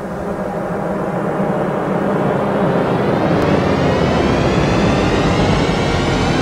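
Swelling whoosh sound effect opening a TV station's intro. It grows steadily louder, with a rising sweep in pitch from about two seconds in.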